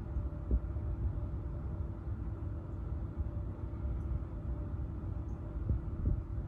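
Steady low rumble of room noise with a faint steady hum, and a couple of faint soft thuds.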